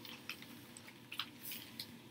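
Folded newspaper rustling and crinkling faintly as it is tucked and pressed flat by hand, with a few short soft crackles.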